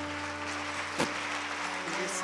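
Audience applauding as a sung passage with instrumental accompaniment ends, a low sustained musical tone lingering underneath. A single sharp knock comes about halfway through.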